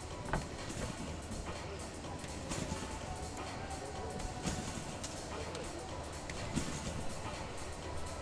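Sports-arena ambience: background music with the chatter of spectators' voices and a few short knocks.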